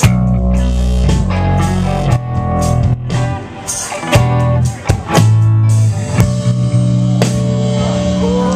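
Live rock band playing: electric guitars, bass guitar and drum kit, with a few short stops and stabbed hits partway through, then a held chord over the drums.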